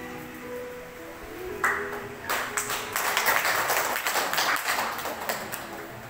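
Accompanied singing ends on its last held notes, then a crowd claps for about three seconds, starting a little over two seconds in.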